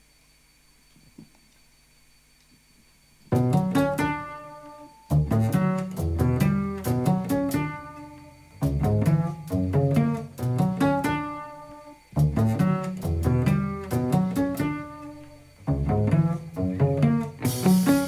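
A few seconds of near silence, then a live band starts a song's intro: electric bass and electric guitar play repeated phrases of plucked notes. Near the end, cymbals and drums come in.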